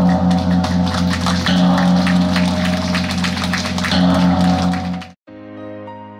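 Large bronze hanging gong ringing with a deep, pulsing hum after being struck, swelling afresh about one and a half and four seconds in. It cuts off abruptly about five seconds in, and soft background music follows.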